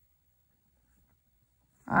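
Near silence: room tone, then a woman's voice begins speaking near the end.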